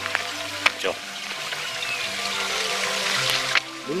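Stream water trickling into a small rock pool, a steady hiss, with background music of held notes underneath and a few small clicks.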